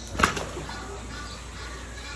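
An arapaima striking food at the surface of the pond: one sudden, loud splash about a quarter of a second in, dying away within half a second.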